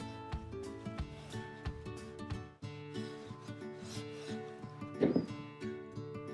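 A small iron rubbing and sliding over cotton fabric on a wooden table, with a brief rustle of fabric being handled about five seconds in. Soft background music with plucked notes plays throughout.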